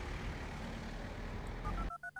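Steady street traffic noise. Near the end, three short electronic beeps step up in pitch, then the sound cuts off abruptly.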